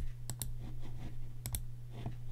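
A few sharp clicks of a computer mouse, two of them in close pairs, over a steady low hum.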